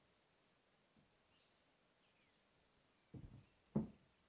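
Near silence with a couple of faint, short high chirps from birds, then two brief low thumps in the last second, the second one louder.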